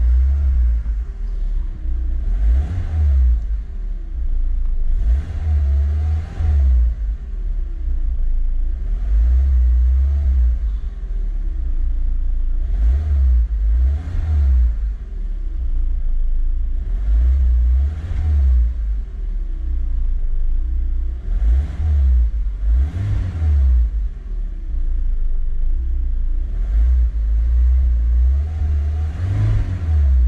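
The Lada Niva Travel's 1.7-litre four-cylinder petrol engine is revved repeatedly while the car stands still, as heard from inside the cabin. The pitch rises and falls again about every two seconds, with blips reaching around 3000 rpm, between returns toward idle.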